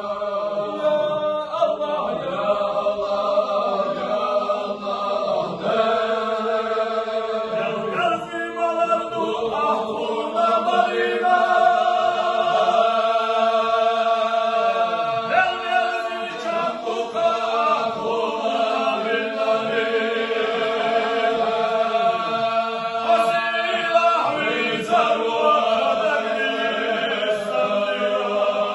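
Unaccompanied male voices chanting a mawlid, a Muslim devotional chant: one lead voice sings a long, sliding melodic line over a steady low held note.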